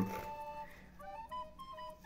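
Soft background music: a melody of single flute-like notes stepping up and down.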